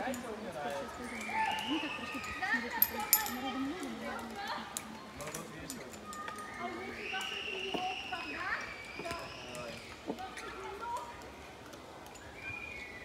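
Faint, indistinct voices of people talking and calling across the rope course, with a few short sharp clicks.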